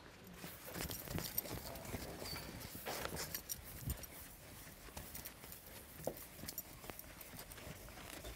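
Blackboard eraser wiping across a chalkboard in quick, irregular scrubbing strokes, with faint scuffs and small knocks.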